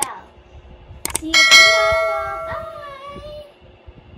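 Two quick clicks followed by a bright bell ding that rings out and fades over about two seconds: the click-and-bell sound effect of a YouTube subscribe-button animation.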